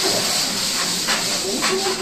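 A steady high hiss of steam in a ramen kitchen, with a couple of sharp metal clinks of kitchen utensils about a second in and again past the middle.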